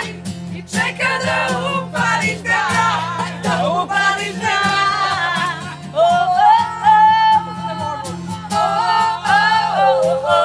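A woman singing a melody with long held notes, accompanied by strummed acoustic guitar.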